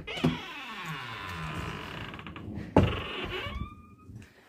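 Door lever latch clicking, then a long creak as a wooden bedroom door swings open. A thump comes near three seconds in, followed by a shorter, higher creak.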